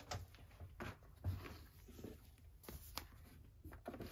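Faint handling noise: cardboard and a cellophane-wrapped pack being moved and rustled, with a few light clicks, the clearest about a second in and about three seconds in.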